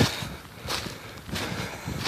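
Footsteps in dry fallen leaves: a few steps, about two thirds of a second apart.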